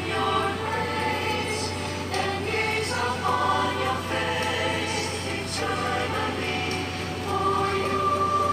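A choir singing slow held chords that change every second or so, with a steady low hum underneath.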